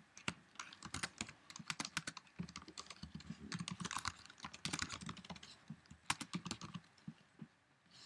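Typing on a computer keyboard: quick, irregular keystroke clicks, thinning out near the end.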